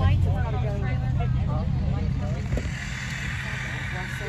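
A car engine running close by with a steady low rumble, most likely a demolition derby car in the pits. A steady hiss joins it about three seconds in.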